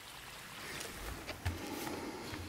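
Faint rustling handling noise with a few soft knocks about a second and a half in.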